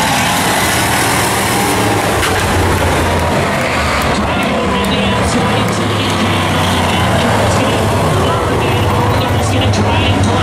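Several Bomber-class stock cars running at racing speed on an oval track, a dense, continuous engine noise from the pack. A track announcer's voice over the PA is mixed in.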